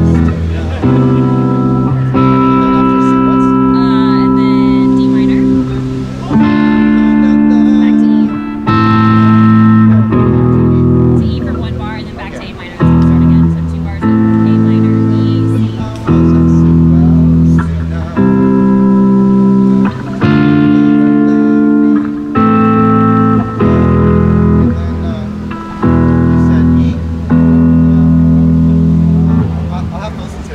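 Guitar playing a chord progression that opens on A minor, each chord held about one to two seconds before a sharp change to the next.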